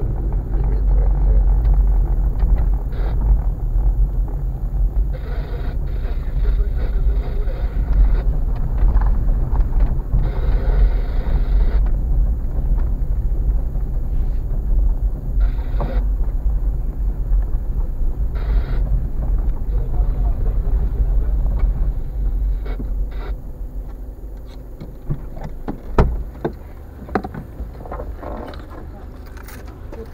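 Steady in-cabin rumble of a car driving slowly over broken, potholed asphalt, with road noise and occasional knocks and rattles. It quietens over the last few seconds as the car slows, and a sharp click comes about two seconds before the end.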